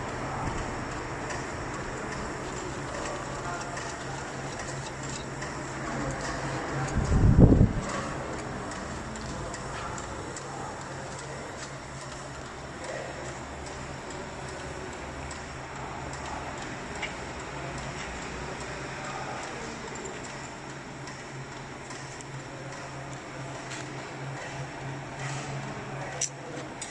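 Steady low hum of workshop machinery with faint metal clicks and knocks from hand work on a lathe setup, and one heavy low thump about seven seconds in.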